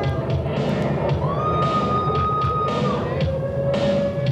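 Loud recorded pop music playing over a nightclub sound system, with the audience cheering and whooping. A long held high note runs through the middle.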